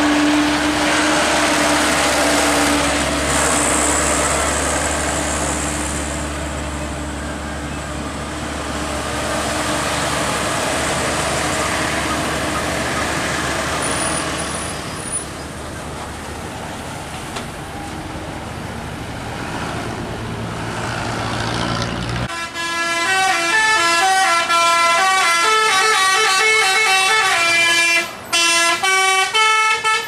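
Tour bus diesel engine and tyre noise as a bus climbs past. About two-thirds of the way through, after a sudden cut, a telolet multi-tone bus horn plays a rapid stepping melody.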